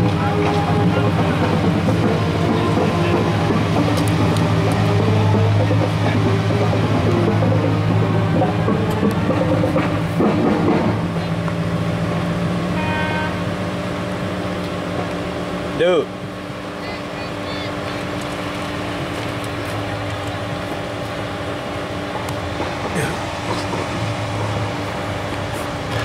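Parade vehicles rolling slowly past with engines running, mixed with background music and indistinct voices; the sound is louder while the pickup towing the float passes, then eases off. A brief sharp click about two-thirds of the way through.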